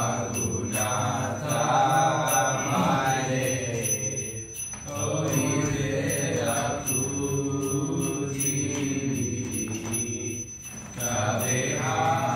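A man chanting verses in a melodic, sung recitation, in phrases with short breaths between them, while a bright metallic jingle keeps a steady beat of about two strokes a second.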